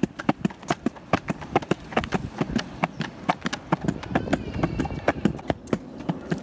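Footsteps on a paved walkway at a brisk, steady pace, about three sharp taps a second.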